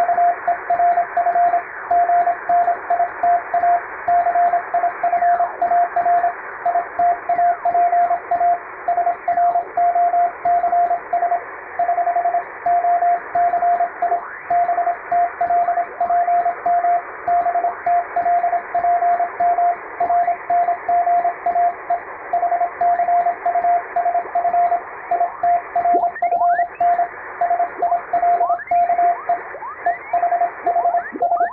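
Morse code (CW) sent on a hand-operated straight key: a steady tone of about 700 Hz keyed in dots and dashes, spelling five-letter practice code groups. It sits over steady radio hiss, with a few brief sweeping whistles, mostly near the end.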